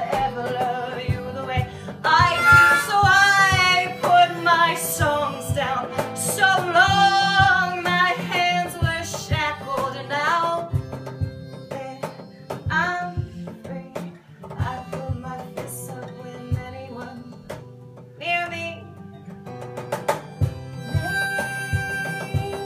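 Acoustic trio instrumental break: a harmonica solo with bending, wavering notes over strummed acoustic guitar and a steady cajon beat. The harmonica is loudest from about two seconds in and drops back after about eleven seconds.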